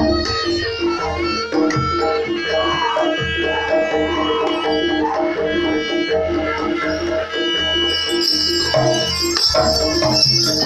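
Live Javanese gamelan music for a barongan dance: a repeating melodic pattern on struck metal instruments over steady hand-drum beats, with a held high reedy melody line in the middle. A bright jingling of bells comes in near the end.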